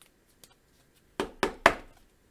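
Three quick sharp knocks, about a quarter second apart, a bit over a second in, preceded by a faint click: hands handling trading cards and a clear plastic card sleeve.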